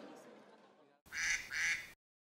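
Crowd chatter fading out, then a short two-part sound sting over the station's closing card: two bright blasts about a third of a second apart that start suddenly and cut off abruptly.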